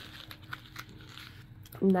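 Light clicks and rustling as a tray of small clear plastic screw-top bottles is lifted out of a foam-lined storage case. A woman starts speaking near the end.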